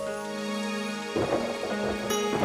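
Background music of sustained, held notes; about a second in, a low, noisy rumble comes in beneath it.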